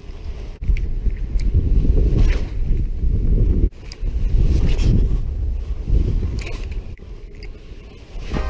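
Wind buffeting the microphone: a loud, low rumble that swells and falls in gusts, with a few light clicks and a brief sudden drop a little past the middle.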